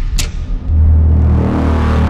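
Cinematic logo-reveal sound effects: a sharp hit about a quarter second in, then a deep low rumble that swells and holds for over a second.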